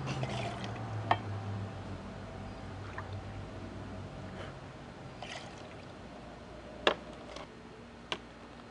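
Grapefruit juice poured from a plastic bottle into a cocktail shaker, a soft trickle of liquid. A few sharp clicks of glass and metal, the loudest near the end.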